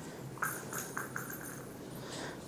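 A few quick light clicks on a hard concrete floor, coming closer together, with a faint metallic jingle, as a young Labrador puppy gets up and moves on its claws with its collar jingling.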